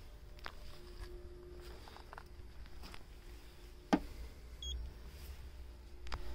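Faint outdoor background with a low steady rumble, and one sharp click about four seconds in.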